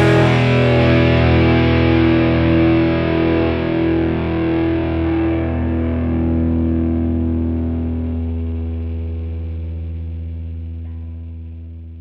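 Distorted electric guitar with effects holding a final chord and letting it ring out, slowly fading away as the song ends.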